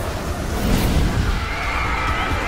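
Horror film trailer soundtrack: loud, dense music and sound effects with a low pulsing rumble, joined near the end by a shrill, wavering cry.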